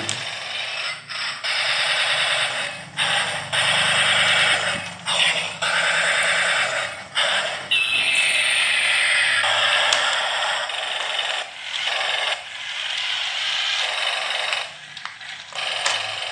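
Toy remote-control tank running: its small motors and plastic gears whir in stretches of a second or two with short breaks as it drives and turns, with a falling electronic tone about eight seconds in.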